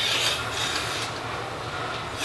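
Milking machine being attached to a cow's udder: a hiss of air drawn into the teat cups at the start that eases off within about half a second, over the steady low hum of the milking vacuum.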